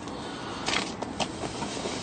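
A paper service logbook being handled and closed, with a couple of brief rustles about two-thirds of a second and a second in, over a steady low hiss.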